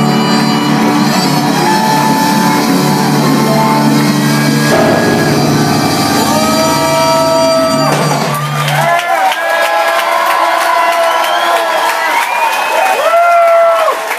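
A Latin jazz quartet (saxophone over upright bass and keyboard) plays live, with the saxophone holding long notes over a steady bass line, until the band stops abruptly about nine seconds in. The crowd then cheers, whoops and shouts.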